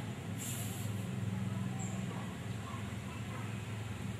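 Steady low background hum, with a brief hiss about half a second in.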